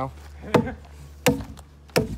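Axe chopping into a log three times, about 0.7 s apart, roughing out the notch where two fence-buck logs cross.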